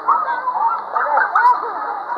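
Several children's high-pitched voices shouting and squealing over one another, with no clear words.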